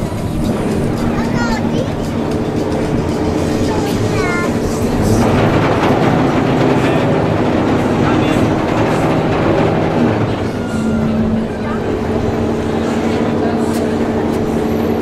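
Tour boat's engine running steadily with a low drone, under a rushing noise that grows louder through the middle. Voices can be heard over it.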